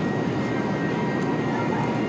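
Steady background noise with a couple of faint steady tones, and no distinct knocks or scrapes standing out.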